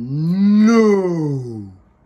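A man's drawn-out, deep 'ooooh' call, sliding up in pitch and then back down, lasting just under two seconds before it fades out.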